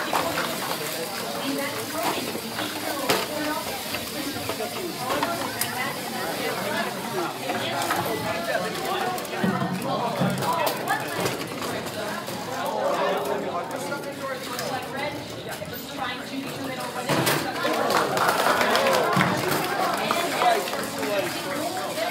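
Chatter of many voices from a crowd in a hall, with no one voice standing out, and a few short knocks. The voices grow louder in the last few seconds.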